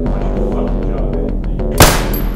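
Background music with a steady, fast ticking beat, and near the end a single loud gunshot.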